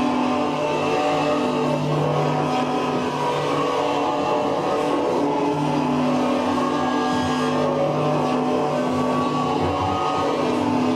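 Steady, loud amplified noise-music drone played live on effects pedals through a guitar amp: a dense hum and hiss with low held tones that swell in and drop out every few seconds.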